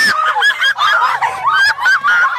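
Kids laughing hard: high-pitched, shrieking laughter from several voices overlapping.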